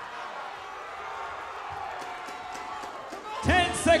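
Boxing-arena crowd noise, a steady hubbub of the audience around the ring, with a few faint sharp clicks about halfway through. A man's commentary voice comes in near the end.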